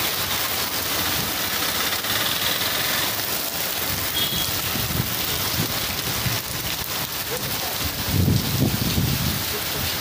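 Heavy rain pouring onto a flooded street, a steady hiss of drops on standing water. About eight seconds in, a louder low rumble rises briefly over it.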